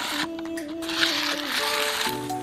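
Gritty scraping of spilled potting soil being gathered by hand across a concrete floor, louder in the second half, over background music with held notes.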